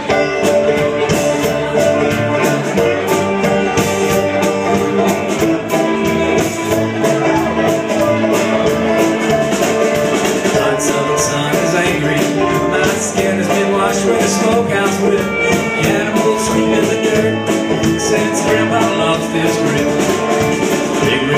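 A live bluegrass string band plays an instrumental intro on fiddle, banjo, electric guitar and upright bass. The band comes in abruptly right at the start.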